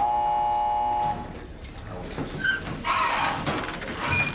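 An electric buzzer sounds once, a steady tone lasting about a second, signalling that visiting time is over. Afterwards there is the general shuffle and murmur of a room full of people.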